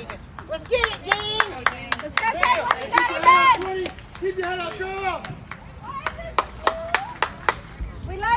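Several high-pitched voices chanting a cheer in drawn-out, sing-song calls over steady, rhythmic hand clapping, about three or four claps a second.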